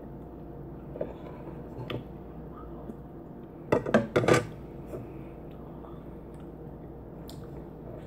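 Metal spoon clinking and scraping in a ceramic bowl of cereal and milk, with mouth and chewing sounds; a few faint clicks early, then a louder short cluster of clinks and mouth noise about four seconds in.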